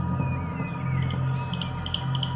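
Background drama score of sustained low notes, with faint short high chirps above it in the second half.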